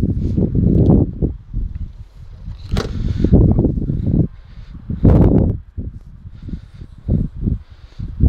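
Wind buffeting and handling rumble on a handheld camera's microphone, coming and going in uneven gusts. About three seconds in there is a sharp knock as the Vauxhall Corsa's door is shut.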